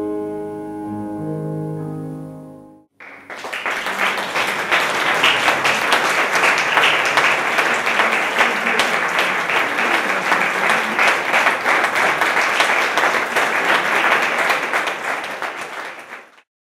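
A grand piano's last chords are held and die away, cut off abruptly about three seconds in. Then an audience applauds steadily until the end.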